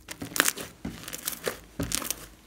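Hands kneading and squeezing a large blob of glossy slime studded with small foam beads, giving a series of short crackly squishes, the loudest about half a second in.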